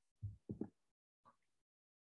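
Near silence in a pause between spoken sentences, with two or three faint, short, low sounds in the first second.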